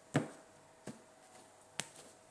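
Tarot cards being set and slapped down onto a cloth-covered table: three short, sharp taps under a second apart, the first the loudest.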